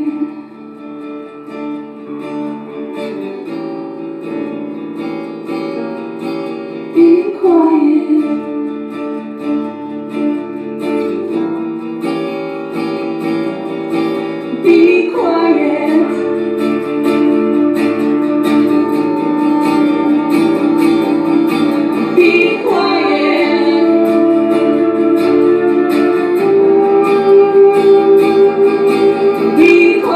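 A woman singing a slow song with long held notes, accompanying herself on a strummed acoustic guitar. The voice slides up into new phrases a few times.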